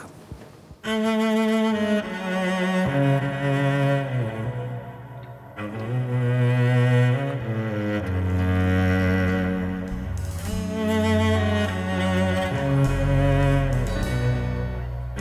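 Solo cello playing a slow bowed melody in long held notes that change every second or two. It enters about a second in, and lower bass notes sound underneath from about eight seconds in.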